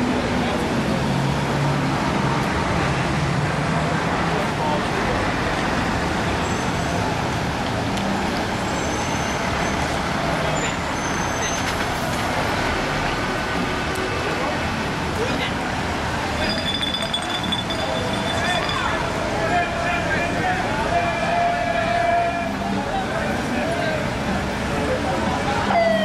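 Busy street traffic with a crowd talking in the background: vehicle engines running and a large semi-trailer truck driving slowly past.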